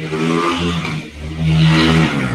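An engine-like drone at a steady pitch, loudest in the second half.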